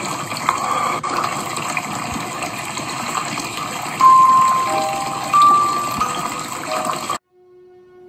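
Steady rushing of water, with a few soft held musical notes over it about four and five and a half seconds in. The rushing cuts off suddenly about seven seconds in, leaving a faint low held note.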